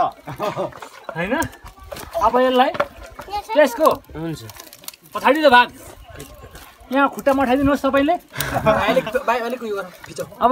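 Speech: people talking in short phrases with brief pauses.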